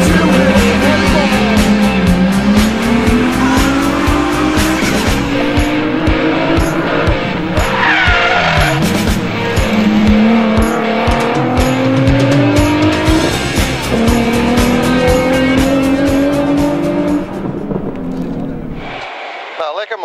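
Rally car engine revving hard and climbing in pitch through the gears several times, with a tyre squeal about eight seconds in, under music with a steady beat. The engine sound drops away near the end.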